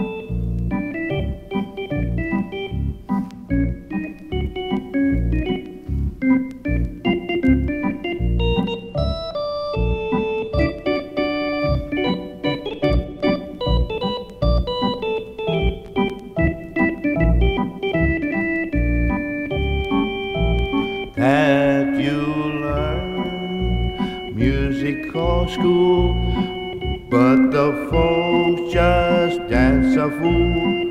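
Electronic organ playing a lively instrumental passage, melody notes over a steady pulsing bass, with rising swooping glides twice in the second half.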